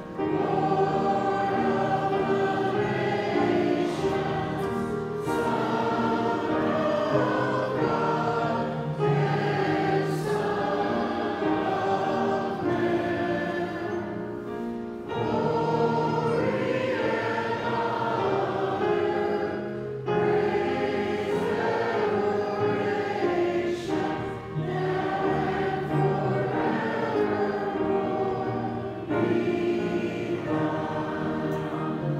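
A church congregation singing a hymn together, in phrases of about five seconds with short breaks between them.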